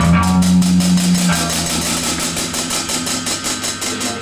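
Live noise-punk band in a sparse passage: a low bass or guitar note held for about three seconds, fading near the end, under a fast, even ticking from the drum kit.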